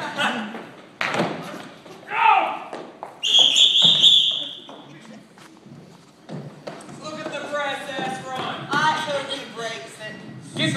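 Actors running and thudding on a stage, with shouts and a sharp knock about a second in. About three seconds in comes one shrill, steady whistle lasting about a second, the loudest sound here, followed by voices and laughter.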